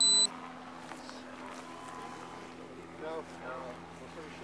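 Body-worn camera's electronic beep, a short high tone ending a quarter second in, as its audio recording starts. Then a steady low hum, with faint voices about three seconds in.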